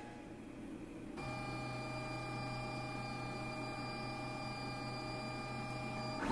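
LulzBot TAZ 6 3D printer running: a steady machine whine of several held tones that starts abruptly about a second in.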